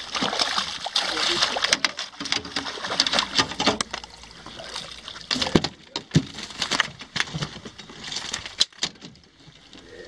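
Redfish thrashing and splashing at the surface beside a boat for the first few seconds, then scattered knocks and clatter from handling on the boat's metal deck.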